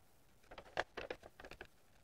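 Scissors snipping through a sheet of paper: a run of short, faint cuts starting about half a second in.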